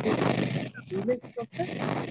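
A person's voice in short, broken bursts over a loud, harsh rushing noise.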